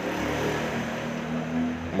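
A steady low engine hum, its pitch rising slightly near the end.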